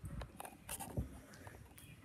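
Footsteps and rubbing handling noise from a hand-held phone while walking across a hard floor: soft, irregular taps and scratches, loudest about a second in.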